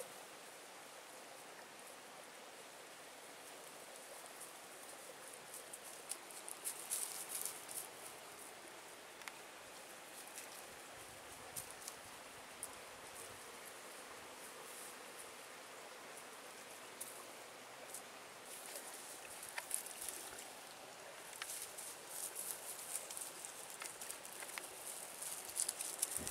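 Quiet forest ambience with faint rustling and scattered light crackles of leaves and twigs in the undergrowth, coming in small clusters and busier near the end.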